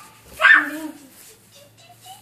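A toddler's short, high-pitched whining vocal sound about half a second in, dropping in pitch as it fades. It is followed by faint, brief vocal sounds.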